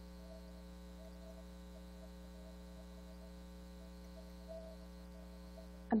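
Steady electrical mains hum with a stack of overtones, faint and unchanging, with no speech over it.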